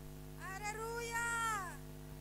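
A young child cries once into the microphone: a single long, high-pitched wail that rises, holds and then falls away.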